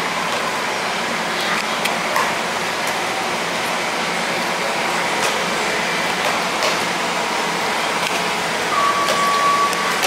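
Steady noise of transit buses idling at the terminal gates, with a few faint clicks. A steady high tone begins near the end.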